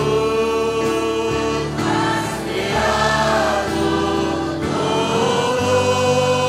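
Spanish-language worship song sung by women on microphones with the congregation joining in, long held notes over a steady instrumental accompaniment.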